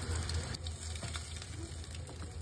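An egg frying in hot oil with minced garlic in a nonstick pan, sizzling with scattered small crackles, over a steady low hum.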